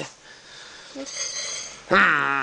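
Chihuahua puppies in a quiet moment of play, with a faint high-pitched squeak about halfway through. A loud cry starts right at the end.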